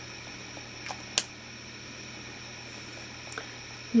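Quiet room tone: a steady low background hum with two short sharp clicks about a second in and a fainter one near the end.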